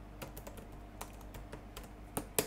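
Computer keyboard being typed on: about a dozen light key clicks at an uneven pace as a web address is entered.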